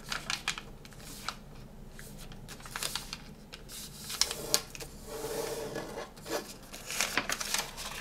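A sheet of origami paper being folded and creased by hand: irregular crinkles, small taps and brief rubs as fingers press and slide along the fold to flatten it.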